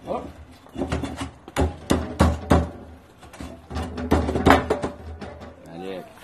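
Refractory bricks being knocked into place on the floor of a steel wood-fired oven's cooking chamber: a run of sharp knocks, bunched a little under two seconds in and again about four seconds in, as the bricks go in with a tight fit.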